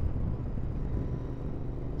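Steady low rumble of a Royal Enfield Interceptor 650 being ridden at road speed: its parallel-twin engine running under wind noise.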